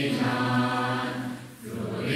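A choir singing held notes together, with a short break between phrases about a second and a half in.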